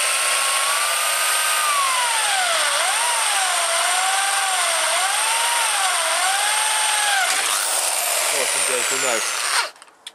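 Hand-held electric drill boring a bolt hole through an aluminium strip and aluminium greenhouse frame. The motor runs steadily with a whine that rises and dips as the bit bites into the metal, and the drill stops shortly before the end.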